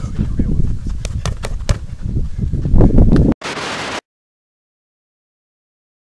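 Gloved blows landing on a stack of old car tyres, an irregular run of dull knocks over a low rumble. A little over three seconds in the sound cuts to a brief hiss and then to complete silence.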